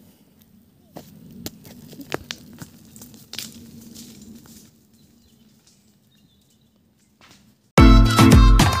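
Footsteps crunching on stony, leaf-strewn ground, with scattered sharp clicks, for the first four and a half seconds, then near silence. Loud music starts abruptly just before the end.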